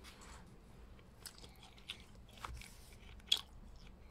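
Pages of a paperback book being handled up close: soft paper crackles and a few sharp clicks, the loudest about three and a quarter seconds in.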